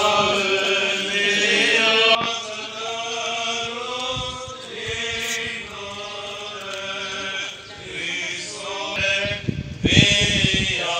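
Voices singing together in slow, long held notes that waver slightly, in the manner of a chant.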